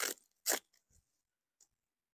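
Two short scratchy rasps about half a second apart, from the battery bag's Velcro straps being pulled at by hand.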